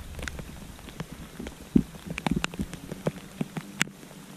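Rain falling on creek water: a steady hiss with many irregular, sharp raindrop taps close by, a few louder than the rest.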